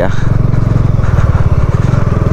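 Motorcycle engine running at steady speed while riding, a low, even pulsing engine note.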